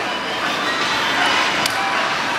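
Steady background noise of a large gym hall, with one sharp click about a second and a half in.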